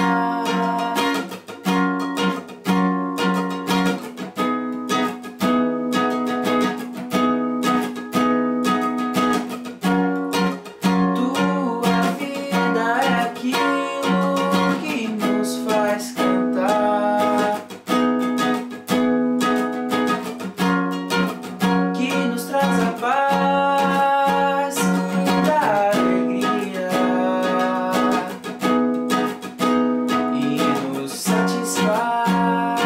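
A man singing in Portuguese while strumming an acoustic guitar, with steady rhythmic strumming throughout.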